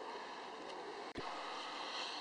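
Faint steady background hiss of room tone, with a single short low click a little over a second in.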